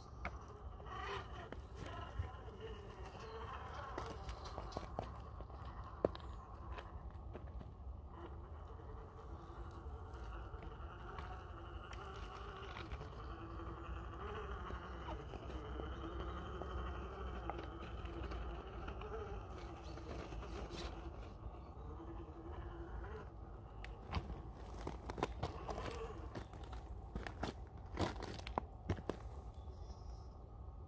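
Small electric motor and gearing of an RC rock crawler whining as it crawls slowly up rock, the pitch wavering with the throttle. Tyres crunch and scrape on the stone, with a cluster of sharp clicks and scrapes near the end.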